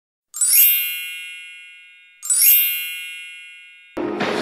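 Two identical bright, bell-like chime sound effects about two seconds apart, each struck suddenly and ringing down slowly.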